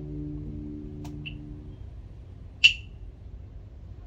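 Acoustic guitar notes ringing on and fading out within the first two seconds, with a soft pluck about a second in. About two and a half seconds in comes a single sharp click with a brief high ring, then a lull in the playing.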